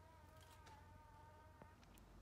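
Near silence, with a faint steady high hum and a couple of faint clicks.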